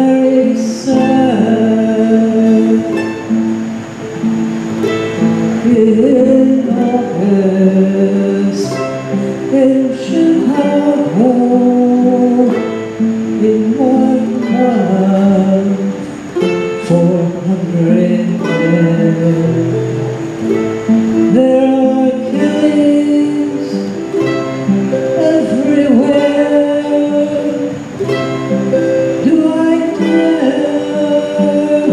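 Acoustic guitar and mandolin playing a folk song without a break, the mandolin picking a melody over the strummed guitar.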